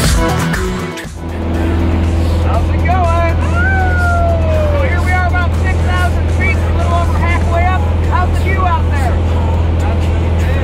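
A small single-engine plane's engine gives a loud, steady drone inside the cabin in flight, with people talking over it. A music track fades out about a second in.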